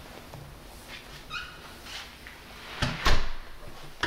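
Small dog vocalising: a short high yip about a second in, then two loud, sharp barks in quick succession near the end.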